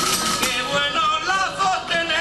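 A male lead singer's solo line of a Murcian aguilando (pascua) copla, held notes bending and wavering in pitch, over strummed laúdes and guitar of a cuadrilla de ánimas.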